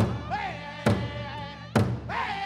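Powwow drum group singing high-pitched over a large hand drum struck in unison, a slow steady beat of about one stroke a second; three strokes fall here.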